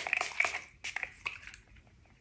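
A quick run of soft taps and rustles close to the microphone as a bottle of facial tan mist is handled and the mist is patted onto the face; it thins out and fades within the first second and a half.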